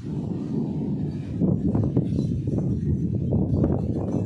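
Strong gusty wind in a thunderstorm, heard as a continuous low rumble that swells and dips with the gusts.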